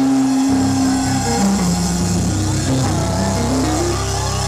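Instrumental band music with no singing: one note held for about the first second, then a melody stepping up and down over a steady bass.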